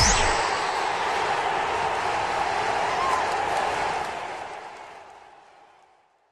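Steady rushing noise from the end-card sound effect, the tail of a rising whoosh, fading away over the last two seconds.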